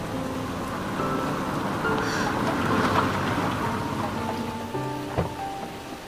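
Heavy rain falling steadily, mixed with background score music of held notes. A single sharp knock comes about five seconds in.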